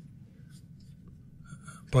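A pause in a conversation: low room noise with a few faint rustles, then a man's voice starting again right at the end.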